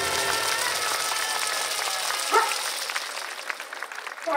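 Audience clapping as the dance music ends, with one short shout about two seconds in.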